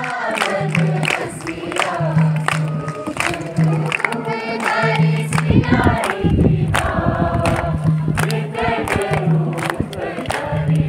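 A group of voices singing together through loudspeakers, with a low note repeating about once a second under the song and sharp beats throughout.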